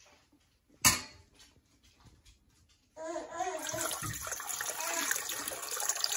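Warm water poured from a glass measuring cup into a stainless steel stand-mixer bowl, a steady splashing pour that starts about halfway through. A single sharp knock comes about a second in.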